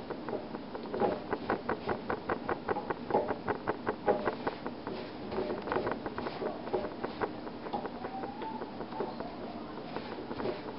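Pastry brush spreading garlic-oil sauce over cut French bread: a quick run of scratchy brush strokes, several a second, heaviest in the first few seconds.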